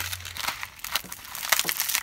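Brittle skin of a dried loofah gourd crackling and crunching as it is squeezed and peeled off by hand, in many irregular crackles.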